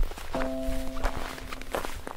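Cartoon sound effect of footsteps in snow as a snowball is pushed along, with a short held musical chord over it.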